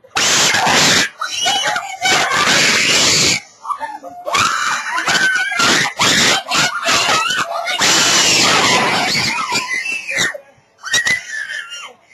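Young people screaming in disgust at a gross-out video, loud and near clipping, in several long bursts with short breaks, trailing off into quieter cries near the end.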